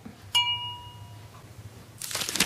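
A single bright, glass-like ding about a third of a second in, ringing and fading away over about a second, as the tea mug is raised in a toast.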